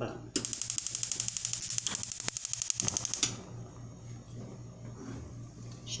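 Gas stove's electric spark igniter clicking rapidly as a burner is lit, a fast, even train of sharp clicks lasting about three seconds and stopping just past the middle.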